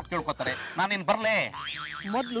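A man and a woman talking in Kannada, then near the end a high whistle-like sound effect that glides up and then slowly down in pitch.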